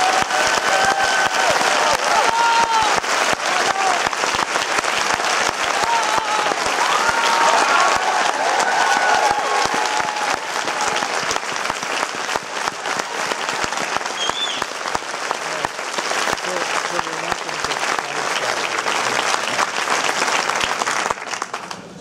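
Large audience applauding steadily, with cheers and whoops over roughly the first half; the applause dies down just before the end.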